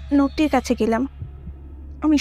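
Bengali spoken narration for about a second, then a heartbeat sound effect: two low thumps after the voice stops, over a steady low drone.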